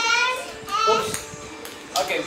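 A young child's voice counting aloud in short high-pitched words, with a sharp click just before the end.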